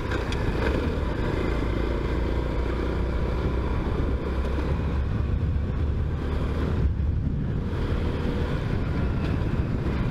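Small motorcycle engine running steadily at a cruising pace, with wind rumbling on the microphone.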